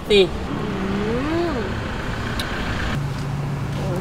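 A motor vehicle's engine running with a steady low hum that comes in about three seconds in, over a continuous outdoor traffic noise bed.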